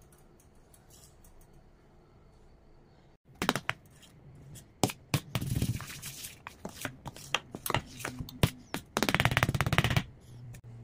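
Ladle stirring and beating thick dosa batter in a stainless steel pot. After about three quiet seconds come wet slapping and scraping strokes, ending in a fast, even run of strokes in the last second.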